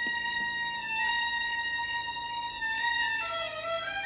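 Dramatic underscore music: a violin holds one long high note, then moves through a few shorter notes near the end.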